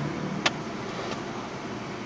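Steady hum and hiss of a car's cabin, with one sharp click about half a second in.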